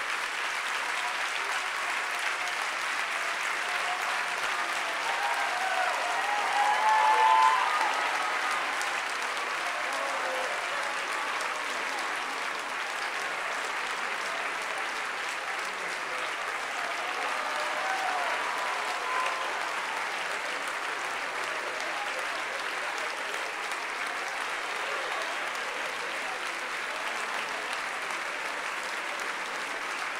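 Audience applauding steadily, swelling briefly about seven seconds in.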